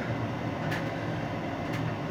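Steady low background hum with two faint clicks, about a second apart.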